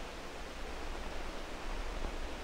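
Steady hiss of an old 16 mm film soundtrack, with a faint low hum underneath.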